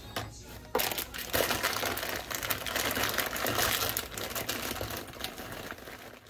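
Quilted fabric shoulder bag rustling and crinkling as items are pushed and packed into it by hand. It starts suddenly under a second in and eases off near the end.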